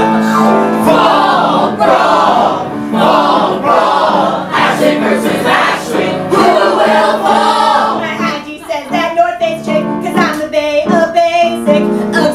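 Performers singing a comic musical number over live instrumental accompaniment.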